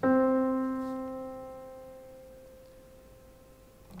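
Blüthner grand piano playing a single middle C, struck once at the start and left to ring, fading away slowly.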